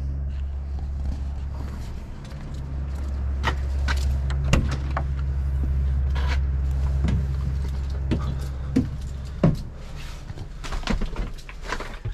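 Scattered knocks and clicks of someone climbing the steps into a Deutz-Fahr 8280 TTV tractor's cab and handling its door, over a steady low rumble.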